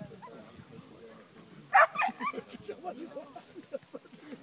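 A dog gives a couple of sharp, loud barks about halfway through, over people talking quietly.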